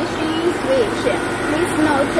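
Perfume mixing chiller running with a steady, even noise from its cooling fan blowing air out through the vent grille, with a voice talking over it.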